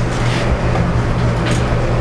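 Steady low-pitched hum over a background rumble, like a motor or traffic running, with no sharp events.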